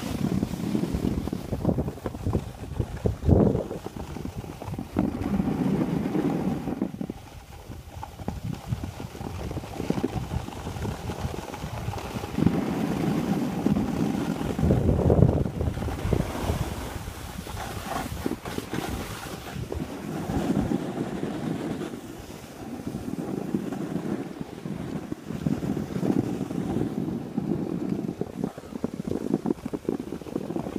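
Wind buffeting the microphone of a camera carried by a moving skier, swelling and fading in uneven gusts, with skis hissing and scraping over snow underneath.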